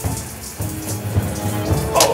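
Shower spray running steadily, with low, sustained background music notes underneath.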